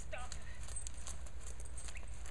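Hoofbeats of a young horse trotting on soft arena footing, a steady run of footfalls a few times a second.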